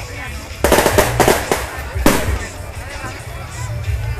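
Firecrackers going off: a quick crackling string of sharp reports for about a second, then one louder single bang about two seconds in.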